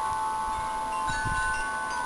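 Chimes ringing: several overlapping, sustained tones, with a new one sounding about a second in.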